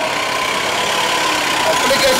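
Steady street traffic noise with a vehicle engine running at idle. A man's voice comes back in just before the end.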